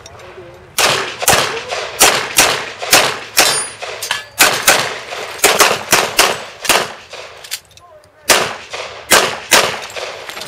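A handgun firing rapidly, more than a dozen shots mostly in quick pairs (double taps), the first about a second in. There is a short break in the firing about three-quarters of the way through, then three more shots.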